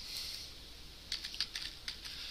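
Computer keyboard typing: a quick run of faint keystrokes about a second in.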